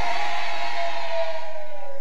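Echoing tail of a shouted prayer line through a church sound system: a few held tones fade slowly and sag a little in pitch, over a faint low hum.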